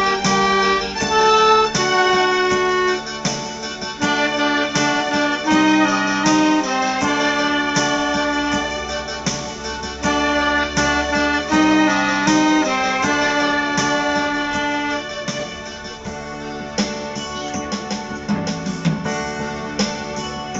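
Clarinet playing a melody in held, stepping notes over chords on an electronic keyboard.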